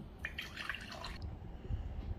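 Water poured from a ceramic bowl into a glass mug, splashing into the glass for about a second before the pour stops.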